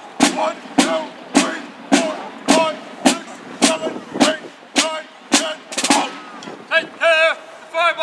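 Military field drum beating a slow, steady cadence: about eleven single strokes roughly half a second apart, stopping about six seconds in.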